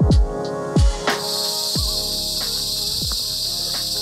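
A loud chorus of forest insects starts up all at once about a second in and keeps going as a steady high buzz. Background music with deep falling bass hits plays underneath.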